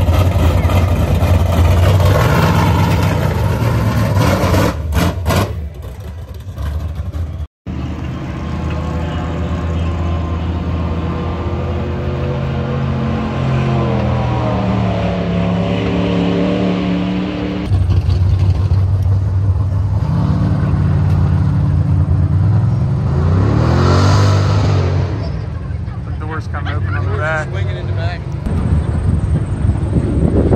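Loud vehicle engines in several cut-together clips, the later ones accelerating hard down a dirt drag strip, with the engine pitch climbing as each pulls away.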